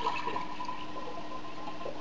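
Fermented cabbage liquid poured from a glass jar through a mesh strainer into another glass jar, a steady quiet trickle.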